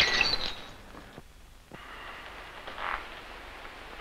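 Tail of a glass crash: a thrown ornament shattering, with shards ringing and tinkling as they die away in the first second, then a faint knock in the quiet that follows.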